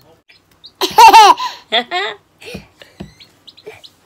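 A baby laughing: a loud, high squealing laugh about a second in, followed by a few shorter, softer giggles.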